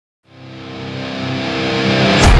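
Intro music fading in from silence: a single held chord that starts about a quarter second in and swells steadily louder, leading into a guitar-driven rock track.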